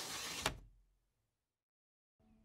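A swelling whoosh sound effect ends in a sharp click about half a second in, then fades out into dead digital silence.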